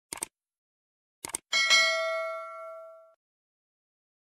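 Subscribe-button sound effect: two quick mouse clicks, two more about a second later, then a bright notification-bell ding that rings on and fades away over about a second and a half.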